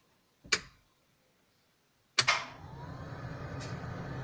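A New Holland T6010 tractor's ignition being switched on: a single click about half a second in, then about two seconds in a sharp onset as the cab electrics come on, followed by a steady low hum.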